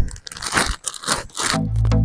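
A plastic compost bag crinkling and rustling as it is carried and handled, with a thump at the very start. About one and a half seconds in, electronic background music with a steady bass beat begins.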